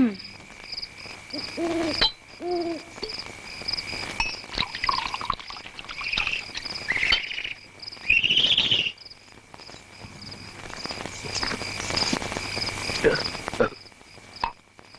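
Night insect chorus of crickets: a steady high drone with a chirp repeating about three times a second. A few short calls rise over it, the loudest a rising call about eight seconds in.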